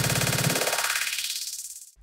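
Electronic dance track playing through an AlphaTheta OMNIS-DUO all-in-one DJ system, cut into a very short beat loop that repeats as a rapid stutter. A rising sweep strips away first the bass and then the higher parts until the sound fades out just before the end.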